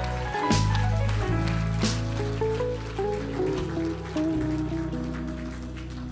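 Live church worship band playing soft keyboard music: slow sustained chords over a held bass line, with a few light cymbal shimmers.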